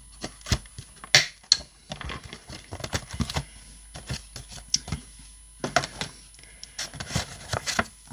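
Handling of a metal ring binder, glossy card packaging and sheets of paper: scattered clicks, taps and rustles, the loudest click about a second in and another cluster near the end.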